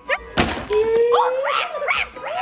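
A single sharp thump about half a second in, then a person's voice holding one long, slightly rising note and breaking into sliding, wavering vocal sounds.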